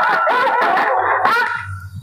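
Music played loud through a cluster of horn loudspeakers, a wavering melody line carrying on from before, fading away about one and a half seconds in.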